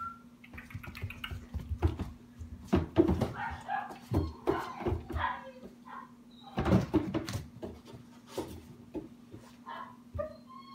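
A young puppy whining and yelping in short calls, mixed with sharp knocks and scrapes that are loudest about 3 s and 7 s in.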